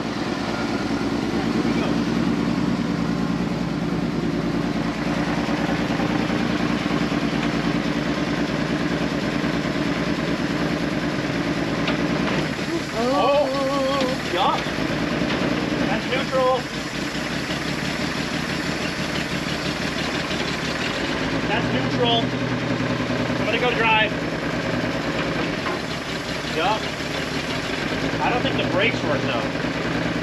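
The 292 straight-six engine of an old GMC P15 step van idling steadily while it warms up after a revival start. It runs a little rough, and the owner suspects the engine is hurt.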